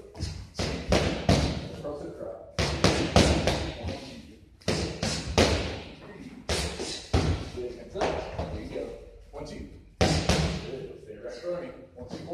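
Boxing gloves striking focus mitts in quick combinations, sharp slaps in clusters every second or two that echo in a large gym.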